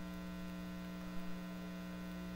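Faint, steady electrical mains hum in the microphone and sound-system feed: a low buzz of a few fixed tones with nothing else over it.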